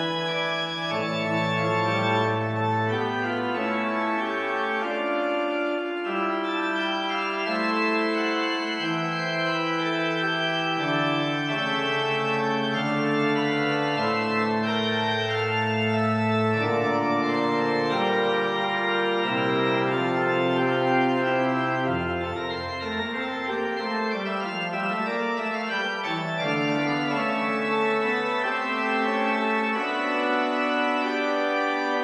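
Pipe organ playing a slow 17th-century French prelude in held, interweaving notes over a moving bass line, with a deep pedal note about 22 seconds in. The sound comes from a Hauptwerk virtual organ sampled from the Father Willis organ of Hereford Cathedral.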